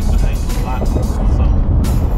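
Background music over the steady low rumble of engine and road noise inside the cab of a 2015 Ford F-150 with the 2.7-liter twin-turbo EcoBoost V6, cruising while towing a trailer of over 6,000 pounds. There is a short click near the end.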